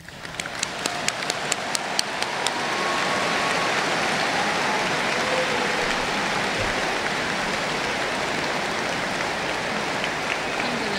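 A large audience applauding. It starts as a few separate claps and builds within about three seconds into dense, steady applause.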